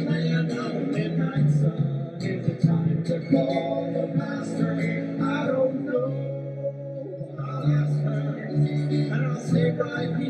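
Live acoustic band playing an instrumental passage of a song: an acoustic guitar strummed over low sustained notes that change about every second.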